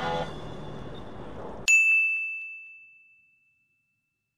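Radio music trails off over car cabin noise, then the sound cuts to dead silence and a single bright ding strikes about two seconds in, ringing and fading out over about a second and a half. The ding is an edited-in bell sound effect.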